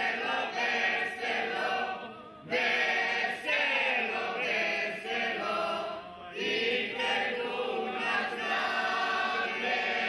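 A group of voices singing together in long phrases, broken by short pauses about two and six seconds in.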